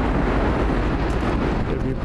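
Wind buffeting the microphone: a loud, steady low rumble with no clear tone.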